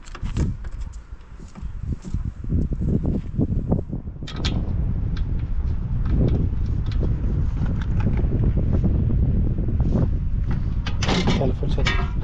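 Wind rumbling on the microphone, with scattered light clicks and taps of bolts and a steel body panel being handled.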